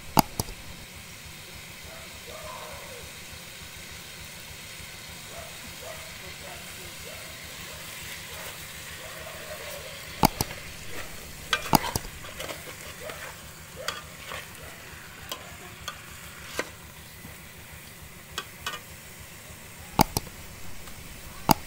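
Steady sizzling from fish cooking in a large aluminium pot over a fire. Sharp clinks of a metal spoon striking the pot as the contents are stirred, loudest about ten and twelve seconds in, with lighter taps after.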